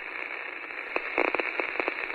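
Radio static: a steady, narrow-band hiss with scattered crackles and clicks, like a poorly tuned broadcast.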